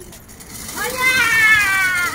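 A baby's long, high-pitched squeal, starting just under a second in: it rises sharply, then slides slowly down in pitch.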